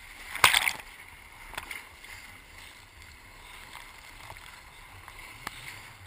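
Whitewater rushing and splashing against the side tube of an inflatable raft close to the microphone, with one loud splash about half a second in and a few smaller ones later.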